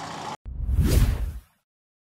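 A whoosh transition sound effect with a deep rumble under it. It swells to a peak about a second in and cuts off sharply half a second later, marking the cut from the news report to the channel's end card.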